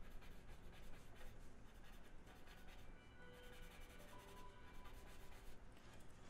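Faint scratching of a non-photo blue pencil sketching on drawing board, in quick irregular strokes.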